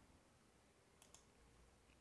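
Near silence: faint room tone, with one faint click about halfway through.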